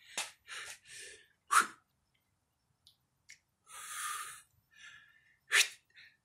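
A man's forceful breaths during a kettlebell exercise: a string of short, sharp exhaled puffs, with a longer hissing exhale about four seconds in and loud puffs at about one and a half and five and a half seconds.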